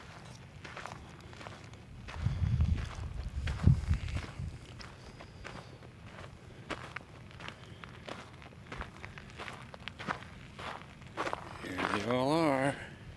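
Footsteps crunching on dry gravel and sandy desert ground, irregular steps moving through brush, with a louder spell of low thuds about two to four seconds in.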